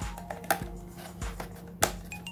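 Clear plastic packaging being handled, giving a few sharp clicks and taps, the loudest near the end, over soft background music.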